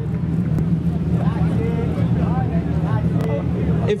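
Rally car engine idling with a steady low rumble.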